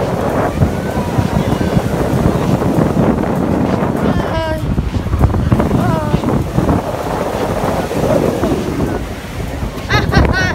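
Wind buffeting the microphone over shallow surf washing up the sand, with brief voices calling out about four and six seconds in.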